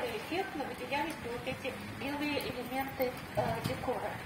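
A tour guide's voice talking at a distance, hard to make out over background noise.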